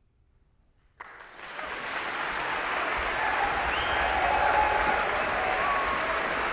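About a second of near silence, then audience applause breaks out suddenly and swells to a steady level, with a few cheers rising above it.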